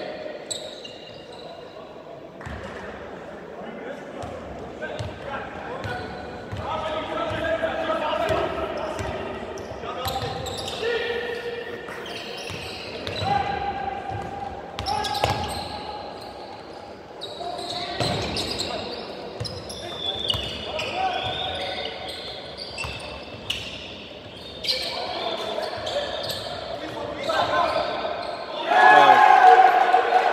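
A basketball bouncing on a hardwood gym floor during play, with players and coaches calling out, their voices echoing in a large sports hall. A louder burst of voices comes near the end.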